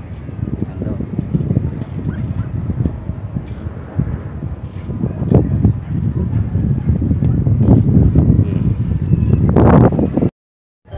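Wind buffeting a phone's microphone: a loud, uneven low rumble of gusts that grows stronger through the second half, with a voice faintly under it.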